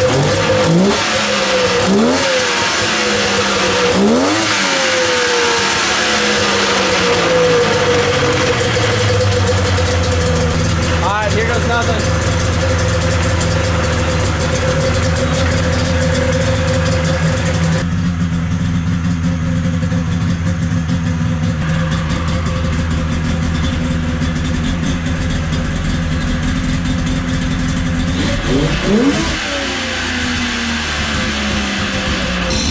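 Polaris XLT 600 two-stroke triple snowmobile engine in a go-kart, running while being warmed up. It is given several quick throttle blips in the first few seconds, then settles into a steady idle, with another blip about eleven seconds in and a couple more revs near the end.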